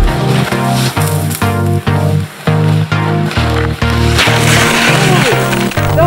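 Background music for the edit, loud, with a steady rhythm of short, clipped notes.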